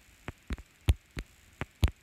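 Stylus tapping on a tablet's glass screen while handwriting: about six short, sharp taps, two of them louder.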